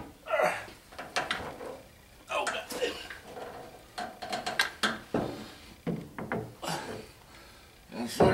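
A series of short metal knocks, clunks and scrapes as a heavy NP208 transfer case is shifted and lowered against the truck frame and adapter, with a man's low voice at times.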